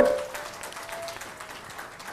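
Light, scattered audience applause in a hall after the speaker's thanks, quiet and even, with a faint ringing tone that fades about a second in.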